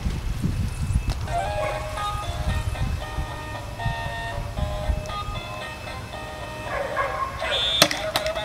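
A simple electronic tune of short, steady beeping notes stepping up and down in pitch, with a sharp click near the end.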